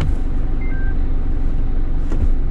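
Heavy truck's diesel engine running at low speed in stop-and-go traffic, heard from inside the cab as a steady low rumble. Two short, quiet beeps come about two-thirds of a second in, the second lower than the first.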